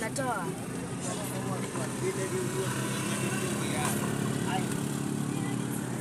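A car driving, heard from inside the cabin: a steady low engine and road hum. A child's voice is heard briefly at the start.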